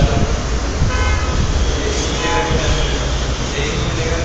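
Steady road-traffic noise with several short vehicle-horn toots.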